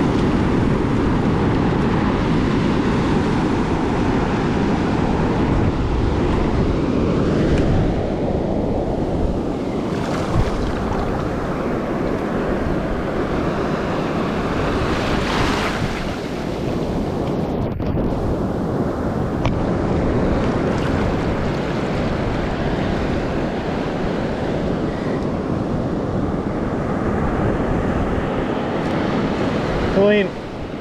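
Surf washing up the beach and foaming around the feet in the shallows, a continuous rushing that swells and eases, with wind rumbling on the microphone.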